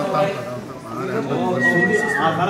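A group of people talking over one another, with a brief high held tone near the end.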